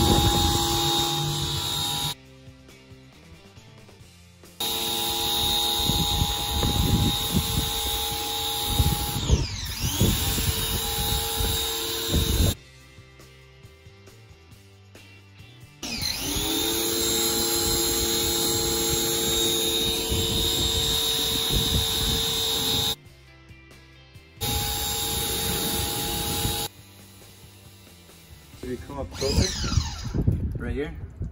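Electric pressure washer running, with a steady motor whine over the hiss of the water spray. It cuts out four times for one to three seconds and starts again, once spinning up with a rising whine.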